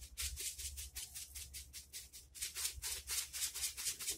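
A plastic shaker jar of cracked black pepper being shaken hard, about four or five sharp shakes a second, the coarse grains rattling in the jar. The cracked pepper is reluctant to come out of the shaker.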